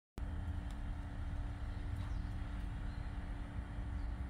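Spirit box radio sweeping through stations: a steady hiss of static with faint clicks as it jumps, and a low rumble underneath. The sound cuts in just after the start.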